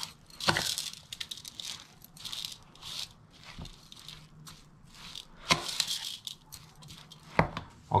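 A metal fork stirring and scraping through raw minced lamb, uncooked rice and chopped herbs in a large bowl: irregular scrapes and clicks, a few sharper than the rest.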